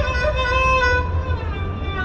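Live Carnatic music in raga Natakuranji: the melody holds one long note for about a second, then slides down through wavering ornamented turns.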